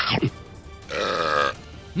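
A quick downward swoop, then a loud cartoon burp about a second in, as if after swallowing something.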